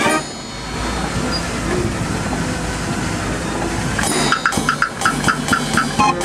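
The 52-key Verbeeck street organ's pipes fall silent at the very start, leaving about four seconds of outdoor background noise with a low rumble. About four seconds in, the organ starts its next tune with quick, repeated staccato chords.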